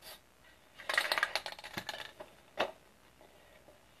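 A spray paint can being shaken, its mixing ball rattling rapidly for about a second and a half, followed by a couple of single knocks.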